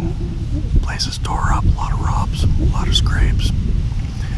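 A man whispering in short phrases, over a steady low rumble of wind on the microphone.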